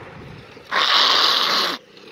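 A person forcing a harsh, hissing rasp from the back of the throat, once, for about a second; it starts and stops abruptly.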